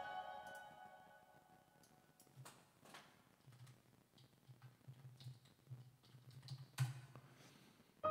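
The last notes of a digital piano die away, then near silence broken by a few faint clicks, the sharpest near the end.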